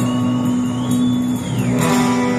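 Live heavy-metal band playing a sustained chord with a single high tone that glides up, holds and falls away, then a strummed guitar chord comes in near the end.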